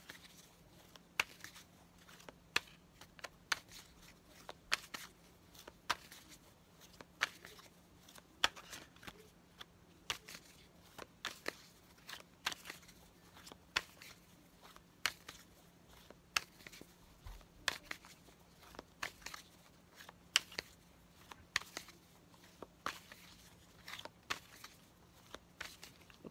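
A deck of tarot cards being shuffled by hand, giving short, sharp card snaps about once or twice a second.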